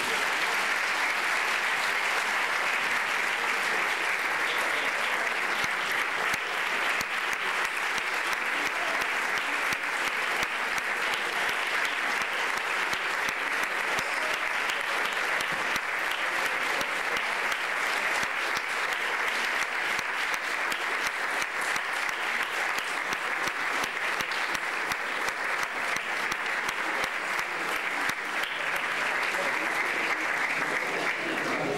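Large audience applauding: dense, steady clapping from many hands.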